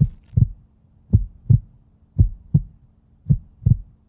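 Heartbeat sound effect: a low double thump, lub-dub, repeating about once a second over a faint steady drone. It is a suspense cue while the decision is awaited.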